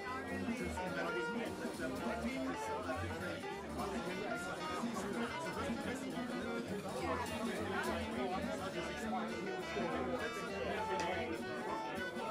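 Crowd chatter in a small club over background music with a pulsing bass line.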